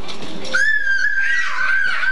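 A young child's long, high-pitched squeal, starting about half a second in and holding nearly one pitch with small wavers.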